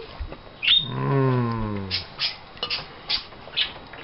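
A short high squeak, then a drawn-out low voice sliding down in pitch for about a second, like an appreciative "mmm". A few light clicks and taps follow.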